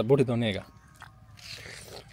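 A short spoken word, then a crisp crunch of raw green fruit about a second and a half in.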